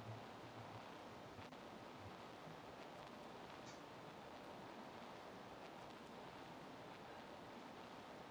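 Near silence: faint room tone with a low hum near the start and two very faint clicks, one about a second and a half in and another near the middle.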